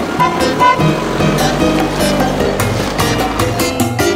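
Music with cartoon car engine sound effects mixed in: a steady low engine drone runs under the notes and cuts off abruptly at the end.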